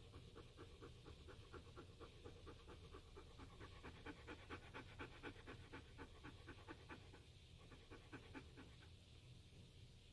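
Faint, quick, even panting of a dog, about three to four pants a second, dying away near the end.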